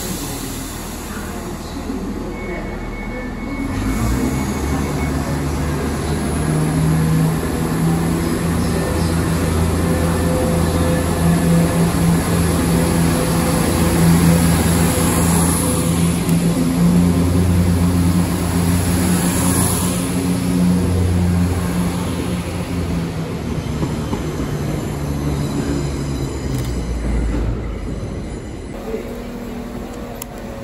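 CrossCountry Class 170 Turbostar diesel multiple unit running into the platform: its underfloor diesel engines give a steady low drone that grows louder as the carriages pass, then fades away near the end.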